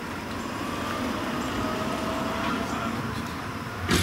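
A motor vehicle driving past, its noise swelling and easing off, with a sharp knock near the end.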